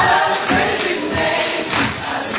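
A large ensemble singing a gospel song together, with hands clapping on the beat.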